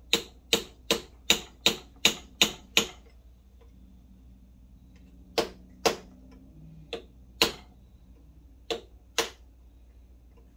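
Small hammer striking the metal housing of a clutch actuator held in a vise, peening its edge back around to close it up: a quick run of eight sharp taps, about three a second, then a pause and three pairs of blows.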